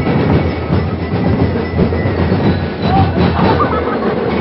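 Loud, continuous street percussion from a parade drum group, with crowd noise mixed in.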